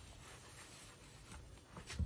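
Faint rubbing of a shoe-shine sponge over a black leather shoe, a few soft strokes with one slightly stronger near the end.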